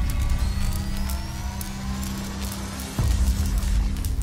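Music and sound effects for an animated logo intro: a steady low drone under slowly rising sweeps, then a sudden heavy hit about three seconds in.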